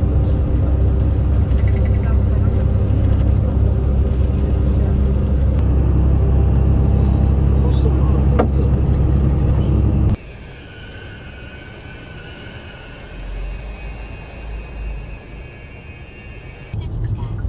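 Steady low engine and road rumble inside an intercity coach at highway speed. About ten seconds in it cuts off abruptly to a much quieter car interior.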